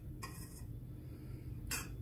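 A metal spoon moving in a stainless steel pot of soup, clinking faintly against the pot twice, once just after the start and once near the end, over a low steady hum.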